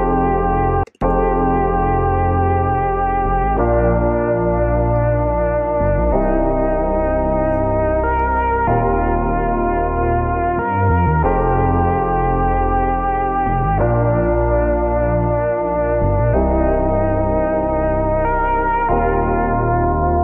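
A dense music sample playing back as a loop, with chords changing about every two and a half seconds over a steady low end. It cuts out for an instant about a second in, then carries on.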